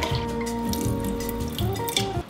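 Water pouring in a steady stream from a plastic gallon jug into a drinking glass, over background music.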